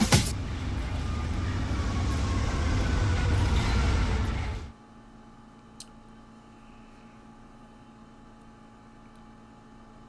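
Street traffic noise, a steady rumble and hiss with a faint falling tone, cuts off abruptly about four and a half seconds in. It leaves a low room hum and a single click.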